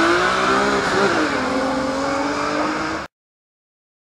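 Rally car engine revving hard on a tarmac stage, its pitch rising and falling through gear changes, with tyre and road noise. The sound cuts off suddenly about three seconds in.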